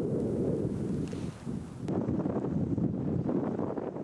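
Wind gusting and buffeting the microphone: a low, rough rumble that eases briefly about a second and a half in.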